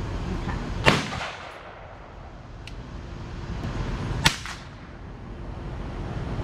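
Two gunshots on an outdoor range, sharp cracks about three and a half seconds apart, each followed by a short echo.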